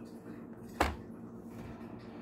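A single short knock about a second in as a biscuit is set down with a metal spatula onto a stainless steel kitchen scale, over a faint steady hum.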